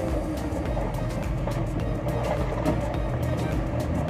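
A motorboat's engine running steadily under way, with water and hull noise, while music plays.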